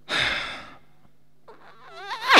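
A person's breathy sigh that fades out over most of a second. Near the end comes a short rising vocal sound.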